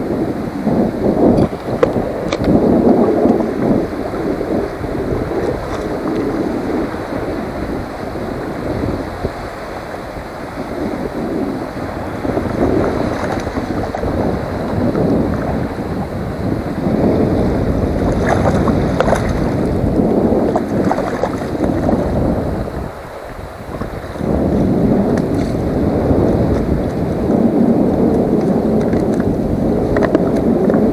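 Wind buffeting the microphone over lapping saltwater, with a few brief splashes about two-thirds of the way in as a hooked sea-run cutthroat trout is played up to the landing net.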